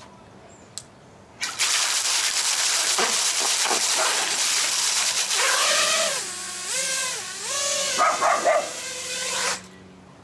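FPV racing quad's brushless motors spinning up under water, propellers churning and spraying the water in a loud continuous rush that starts about a second and a half in. In the second half a motor whine rises and falls repeatedly as the throttle changes, and the whole sound cuts off suddenly near the end as the quad is out of the water.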